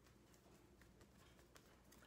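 Near silence with a few faint ticks as a deck of oracle cards is fanned out by hand.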